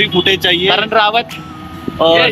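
Men's voices chatting for about the first second over the steady low hum of a two-wheeler's engine while riding; the voices stop a little over a second in and the engine hum carries on alone.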